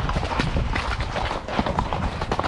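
Horses' hooves striking the ground in quick, irregular succession, with low wind noise on the microphone.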